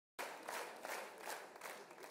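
Theatre audience applauding, cutting in abruptly at the start and dying away over the two seconds.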